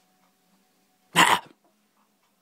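A single short, harsh vocal burst, loud and close to the microphone, a little over a second in.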